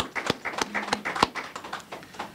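A brief round of applause from a small audience: separate hand claps at an uneven pace, thinning out and fading away near the end.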